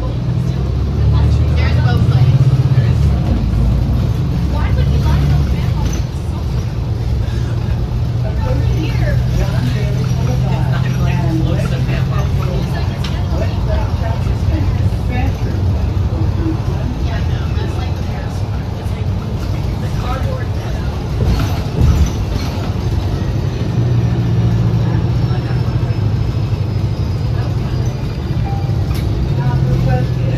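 Interior of a 2019 New Flyer XD60 articulated diesel bus under way: the engine and drivetrain run with a steady low drone, swelling at the start and again near the end, over road noise. There is a single sharp knock about two-thirds of the way through.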